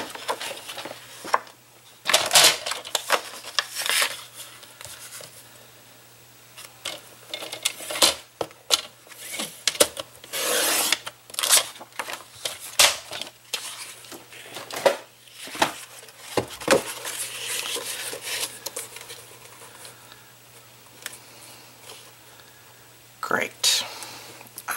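Patterned cardstock being handled and cut on a sliding paper trimmer: irregular rustles, slides and clicks of paper and tools on a cutting mat, over a faint steady low hum.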